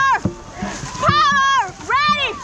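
Dragon boat crew paddling at race pace, with a loud pitched shout on each stroke, about one a second, over the splash of paddles striking the water.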